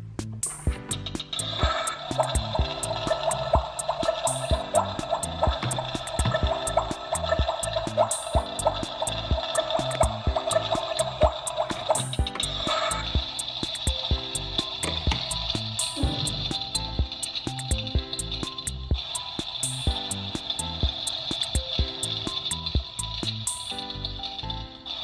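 Background music with a steady beat. Over it, a battery-powered toy stove's electronic cooking sound effect: it comes on about a second and a half in when a burner knob is turned, and changes about 12 seconds in as the other knob is turned.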